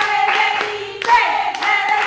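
Hands clapping, several quick claps from two people, over a held voice.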